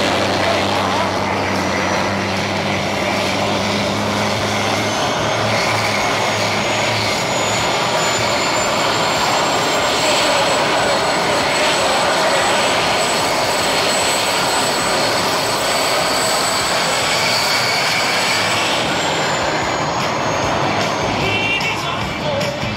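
Homemade gas-turbine jet engine on a go-kart running loudly, a steady roar with a high turbine whistle that rises in pitch over the first ten seconds or so, holds, then falls away near the end. This is the run in which the afterburner is thought to be lit.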